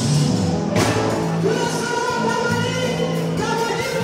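A woman singing into a microphone over live djembe hand drums and a drum kit, her voice entering with a held melodic line about a second and a half in.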